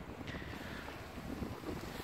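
Wind buffeting the phone's microphone: a faint, uneven low rumble.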